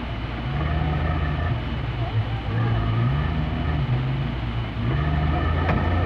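A 4x4's engine revving up and down repeatedly under load as a vehicle is driven and pushed through deep floodwater.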